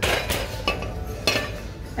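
Pampered Chef stoneware square baking dish set down in a wire shopping cart, clinking against the metal and the dishes already in it: one sharp clink followed by a few lighter ones.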